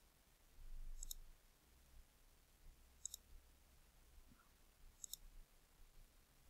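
Faint computer mouse button clicks: four short, sharp clicks, at the start and then about one, three and five seconds in, over a faint low hum.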